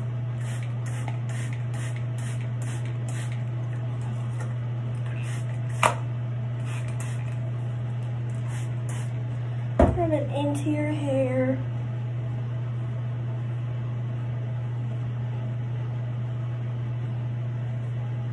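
Plastic trigger spray bottle squirting water onto hair: short hisses about two a second for the first few seconds, then a few more, over a steady low hum. A sharp click comes near six seconds and a thump near ten.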